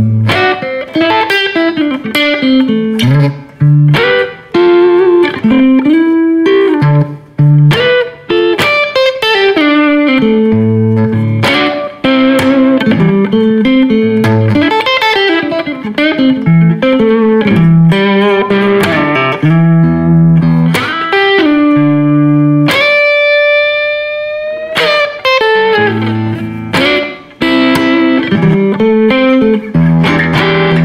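Jasper Guitars Deja Vudoo electric guitar played through an amp with a little gain, its volume knob rolled back about twenty percent: a continuous run of picked single-note phrases. A little past the middle, one long note rings on for about two seconds, the guitar keeping its clarity and sustain at the lowered volume.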